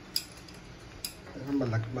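Two light clicks about a second apart, then a man's voice starts near the end.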